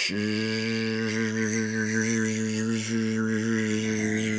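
A deep voice holding one long, steady, chant-like note.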